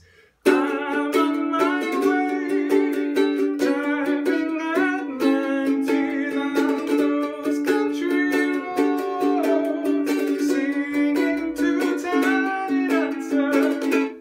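CloudMusic ukulele strummed in all down strokes in a 1-2-3 pattern through the chorus chords D, G, B minor, A, with a man singing along. The playing starts about half a second in and stops just before the end.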